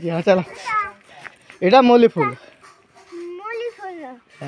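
Speech only: people talking in short phrases, a child's voice among them.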